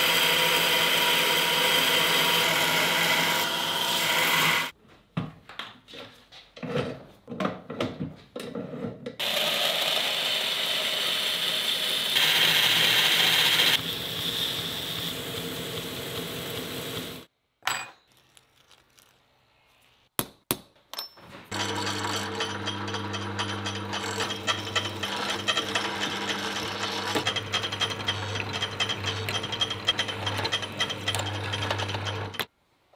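Belt grinder running with a steel rod pressed against the belt, in two long stretches separated by a few seconds of light clicks and handling. About three-quarters of the way through, a drill press motor starts and runs steadily with a low hum as the bit cuts into steel clamped in a vise.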